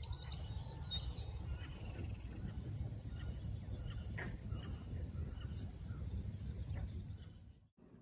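Outdoor ambience of insects trilling in a steady high drone, with a few brief bird chirps over a low rumble. It cuts off abruptly just before the end.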